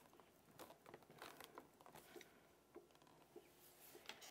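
Near silence, with a few faint taps and rustles of hands pressing down on a stamping platform and lifting its door.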